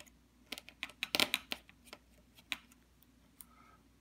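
Faint, scattered small clicks and taps of a ferrite-toroid RF choke being handled and removed from its test fixture, with a quick cluster about a second in and a single click later.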